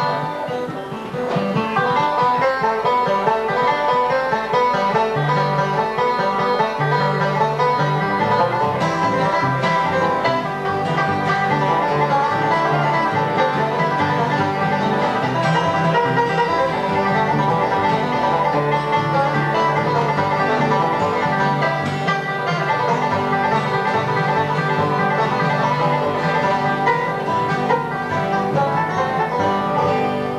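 Bluegrass band playing an instrumental, with banjo picking over strummed acoustic guitars and a fiddle.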